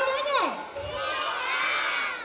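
A crowd of children shouting and cheering together, many voices at once, building up about a second in after a single voice calls out with a falling pitch.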